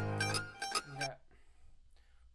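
A sampled mandolin loop, with hammer-on plucked notes, plays back over a sustained low bass note and stops about half a second in. A brief low voice sound follows about a second in.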